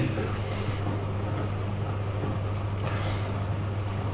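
A steady low hum with a faint even hiss above it, level throughout, from running machinery or equipment in the room.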